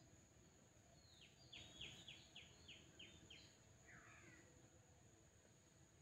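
Near silence with a faint bird call in the background: a run of about seven short falling notes, about three a second, starting a second and a half in, then one more brief call at about four seconds.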